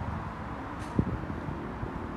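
Outdoor street ambience: wind rumbling on the microphone over a steady hum of distant traffic, with a few soft low thumps of footsteps, the clearest about a second in.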